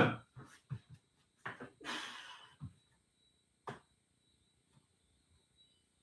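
A man breathing out hard as he starts press-ups, with a couple of soft exhales in the first few seconds and a single sharp click a little past halfway.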